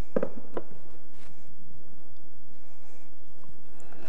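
Two light clicks about a third of a second apart near the start, from plates and an olive oil bottle being handled on a kitchen counter, over a steady background hiss.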